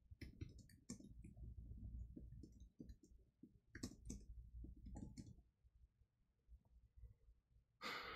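Faint computer keyboard typing: a run of quick key clicks that thins out and stops a little over halfway through. Near the end comes a breath out.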